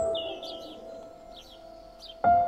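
A single struck musical note rings out at the start and slowly fades, while small birds chirp repeatedly over it in short, sweeping calls.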